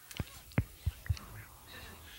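A few short, faint clicks and taps, spaced irregularly a few tenths of a second apart.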